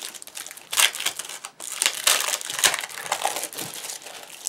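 Clear plastic packaging crinkling in irregular crackly bursts as mirrored cardboard sheets are handled and pulled out of it.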